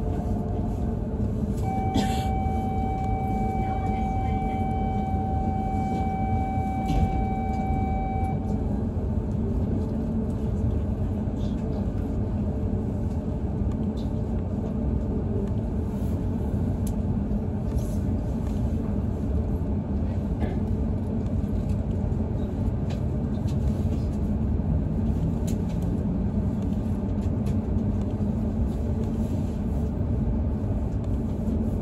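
Steady low rumble inside an E5 series Shinkansen car as the train stands at a platform and then starts to pull away. About two seconds in, a steady tone sounds and holds for some seven seconds before stopping.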